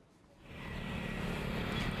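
Street traffic of motorbikes and cars, fading in about half a second in and growing to a steady noise.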